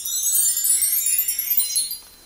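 A shimmering chime sound effect: a cluster of high bell-like tones that slides downward in pitch and stops just before two seconds.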